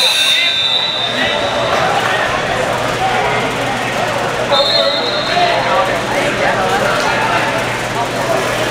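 Two high, steady whistle blasts, the first about a second and a half long at the start and a shorter one about halfway through, as wrestling referees signal on the mats, over gym chatter.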